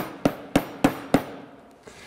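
A sturdy SuperSeal mixing bowl with its lid on, knocked by hand: a quick row of sharp, hollow knocks, about three a second, that stops a little over a second in.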